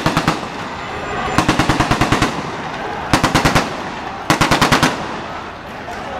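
Automatic gunfire: four short bursts of rapid sharp reports, about ten a second. The longest burst comes about a second and a half in.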